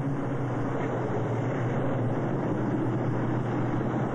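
A steady humming drone over an even hiss, unchanging throughout.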